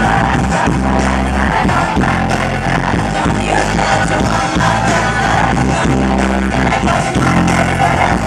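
Live rock band playing through a PA, with electric guitars, bass and drums and women singing, heard from within the audience.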